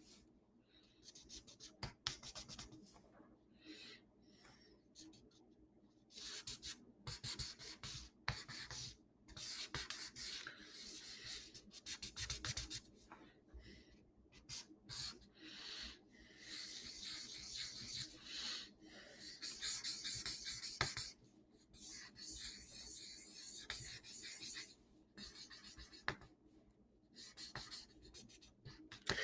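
Faint pen strokes on paper: short, irregular scratching runs with brief pauses, as a drawing is sketched.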